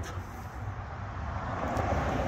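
Steady low rumble of road traffic on a nearby road, growing a little louder toward the end.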